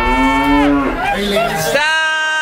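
A long, moan-like wailing note, rich in overtones, that slides down in pitch and breaks off just before a second in; a second wail starts near the end and likewise falls away.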